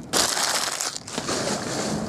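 Torn foil trading-card pack wrappers crumpled and swept up by hand. There is a loud burst of crinkling in the first second, then quieter rustling.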